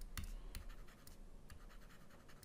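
Faint scratching and light ticks of a stylus writing on a touchscreen, about six small taps as a word is handwritten.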